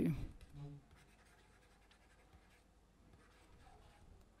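A man's voice trails off in the first second. Then comes faint scratching of a stylus writing on a pen tablet, strongest near the end.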